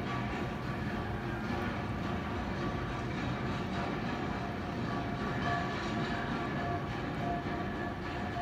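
A steady, low mechanical rumble with faint, steady whining tones above it.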